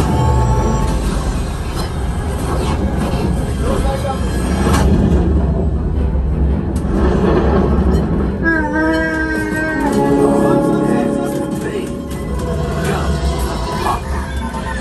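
Flight-simulator ride soundtrack in a Millennium Falcon cockpit: dramatic orchestral music over a deep, steady rumble as the ship makes the jump to light speed, with a warbling voice-like effect about eight and a half seconds in.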